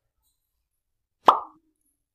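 One short pop with a sudden start that dies away within about a quarter second, a little over a second in; otherwise near silence.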